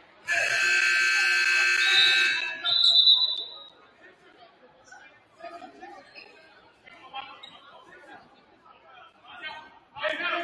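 Gym scoreboard horn sounding for about two seconds, followed at once by a short referee's whistle blast, with the hall echoing. Then faint crowd chatter.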